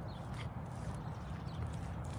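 Footsteps of a person walking on an asphalt path, at walking pace, over a steady low rumble.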